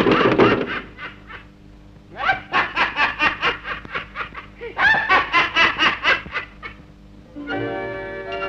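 A cartoon character's voice giving two runs of quick, giggling laugh syllables, about four or five a second, each run lasting about two seconds. Music stops about a second in and starts again near the end.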